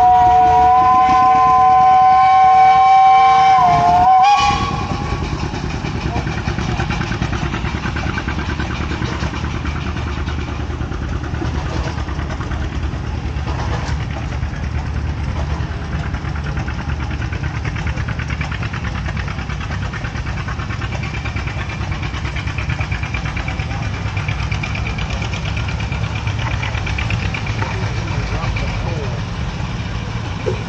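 Steam traction engine whistle blowing a loud, steady chord of several tones for about four seconds, sagging slightly in pitch as it cuts off. After that, the low steady running of engines on the show grounds.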